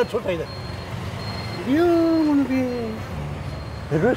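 Men's voices speaking in short bursts, one drawn out and falling in pitch, over a steady low hum of street or vehicle noise.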